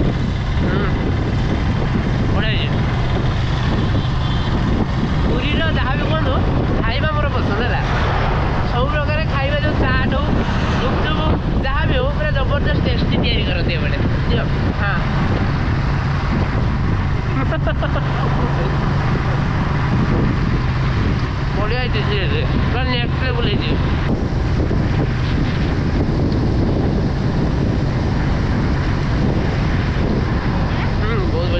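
Motorcycle riding along at a steady speed: a constant low engine hum under heavy wind noise buffeting the microphone.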